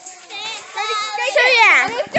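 Children's high-pitched voices calling out and shrieking while playing, with no clear words. One long cry sweeps sharply downward just before the end.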